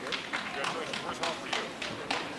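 Scattered applause from a small number of people clapping, the claps irregular and several a second, with murmured voices underneath.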